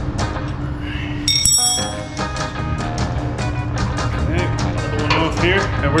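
Background music with a steady beat. About a second and a half in comes a short, bright metallic clink of a hand wrench on the steel bumper bolts.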